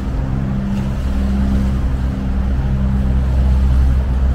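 Steady low engine drone, several low hum tones held throughout, with an even rushing noise over it.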